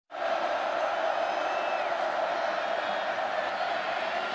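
Stadium crowd noise at a college football game: a large crowd cheering in a steady, even wash of sound that starts suddenly right at the beginning.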